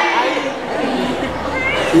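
Speech only: several voices chattering at once in a large room.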